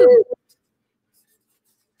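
A woman's voice holding out the end of an excited "woohoo", cut off just after the start, then dead silence.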